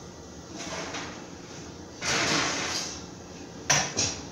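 A kitchen oven door pulled open about two seconds in, then a sharp metallic clatter near the end as a metal baking sheet is slid off the oven rack.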